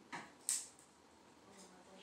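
Two brief, sharp noises about a third of a second apart, the second louder and higher-pitched.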